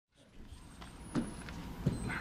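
Faint low rumble of room and microphone noise fading in from silence, with a sharp click a little over a second in and a short low sound just before the end.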